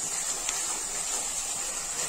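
Red masala paste frying in hot oil in an earthenware pot: a steady sizzle as a wooden spatula stirs it, with one light click about half a second in.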